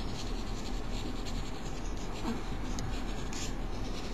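A Cretacolor Aqua Stic watersoluble oil pastel, yellow, being rubbed across drawing paper in steady strokes, a continuous dry scratching of pastel on paper.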